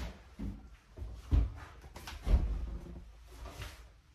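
Footsteps, a dull thump about once a second, with handling noise from a handheld phone.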